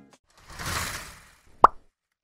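Logo-reveal sound effects: a short whoosh that swells and fades over about a second, then a single sharp pop about a second and a half in, the loudest moment.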